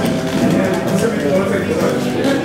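Live band music at full volume: guitars, a drum beat and a voice over them, between sung lines of the song.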